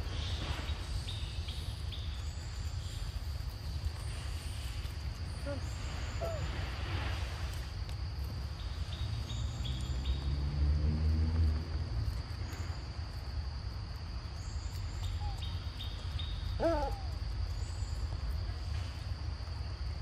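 Forest ambience: insects drone steadily at a high pitch, with short high chirps repeating about every second and a half over a low rumble. A low, hoot-like pitched sound swells between about 9 and 12 seconds in, and a brief cluster of squeaky animal calls comes near 17 seconds.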